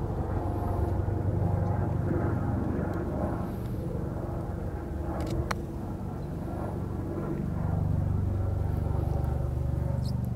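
A steady engine drone that grows a little louder in the second half. About five and a half seconds in comes a single sharp click: a putter striking a golf ball.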